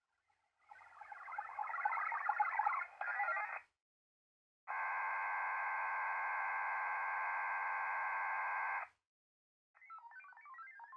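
Winlink data exchange over VARA HF, heard as digital modem tones from the (TR)uSDX HF transceiver and confined to the radio's voice passband. About a second in there is a fluttering burst lasting nearly three seconds. After a short gap comes a steady chord of several held tones for about four seconds, then it cuts off.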